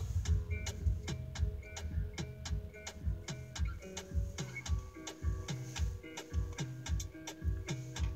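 Music playing from the car radio, with a steady beat of low kick-drum thumps about twice a second, crisp ticking in between, and held keyboard-like notes.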